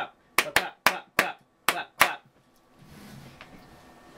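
Hand clapping: about seven sharp claps in quick, uneven succession over two seconds.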